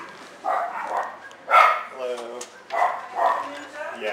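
Dog vocalizing in short, loud barks and yowls, about two a second, with a longer, lower-pitched drawn-out call about two seconds in.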